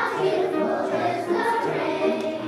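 Children's choir singing in many voices, accompanied by piano; a new sung phrase begins right at the start.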